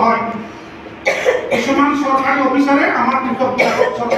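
Speech: a voice talking, with a brief pause about a second in.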